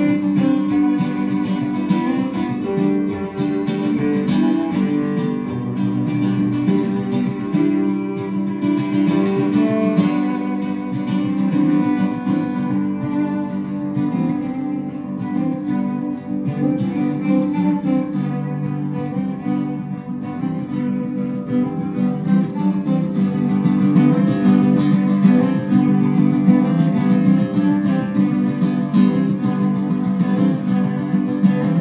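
Cello and classical guitar playing a piece together as a live duo, the guitar prominent over the cello's low sustained notes, growing somewhat louder in the last several seconds.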